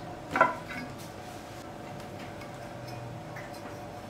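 A bundt cake mold and ceramic serving plate knocking once against the table about half a second in, with a couple of light clicks right after, as the turned-out cake is handled; then only a faint steady room hum.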